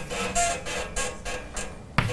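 Chalk writing on a blackboard: a run of short scratching strokes and taps, several a second.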